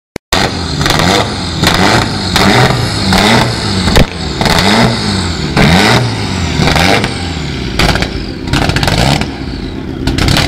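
Mitsubishi Lancer Evolution rally car's turbocharged four-cylinder engine revved in quick repeated blips, about one every three quarters of a second, each rising and falling in pitch.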